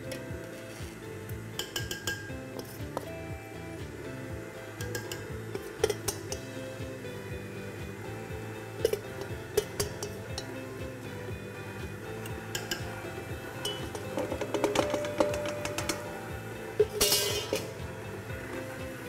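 Background music, with a metal spoon clinking again and again against a stainless steel mixing bowl as flour mixture is spooned out, and a denser run of clinks near the end.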